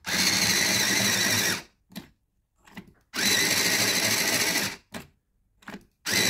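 Tenwin electric pencil sharpener, set to its smaller point-angle, sharpening a graphite pencil. Its cutter motor runs in two even bursts of about a second and a half each as the pencil is pushed in, with a few light clicks in the pause between.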